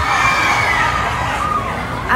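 Concert crowd cheering and screaming, with high-pitched shrieks over the noise.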